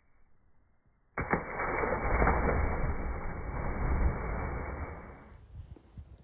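Splash of a child jumping feet-first into a lake, played back in slow motion: a sudden hit about a second in, then a long, dull, muffled wash of water that fades out about four seconds later.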